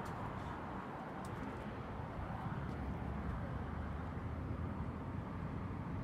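Steady outdoor rumble of wind on a phone microphone, with a couple of faint clicks.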